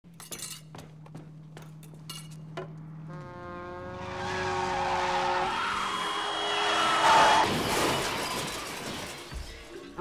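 An off-screen car skids with a long, steady screech from about three seconds in, then crashes, with breaking glass, loudest about seven seconds in before it fades. Before the skid there are a few scattered knocks.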